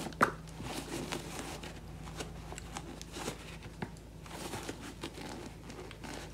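Handling noise of a sneaker being worked over by hand: rustling, rubbing and light clicks as the insole is pulled out of the shoe, with one sharper click just after the start.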